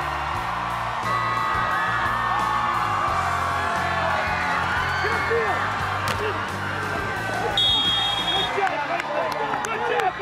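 Background music with a steady bass line, over game sound of a crowd cheering and shouting. A brief high tone sounds about eight seconds in, and the bass drops out soon after.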